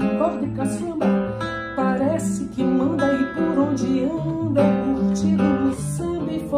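A woman singing a samba-style MPB song, accompanied by an acoustic guitar playing plucked bass notes and chords.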